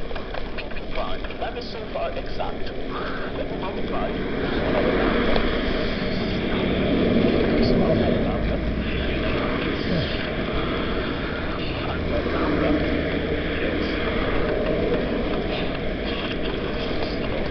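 Road traffic on the adjacent road heard from a moving camera, with steady noise from passing tyres and wind; the sound swells as vehicles pass about five to eight seconds in.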